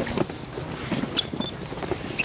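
Outdoor handheld-camera ambience: wind rushing on the microphone, with scattered footsteps and handling knocks.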